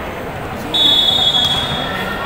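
A referee's whistle blown once, one high, steady blast of about a second, over the hall's crowd chatter: the signal that authorises the next serve.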